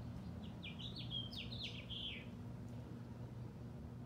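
A songbird singing a quick phrase of about eight short, high, falling notes that ends in a longer falling note, a little over two seconds in.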